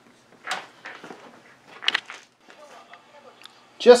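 Handling noise from loop antennas being lifted and carried: short rustling scrapes about half a second and two seconds in, with faint knocks and clicks in between.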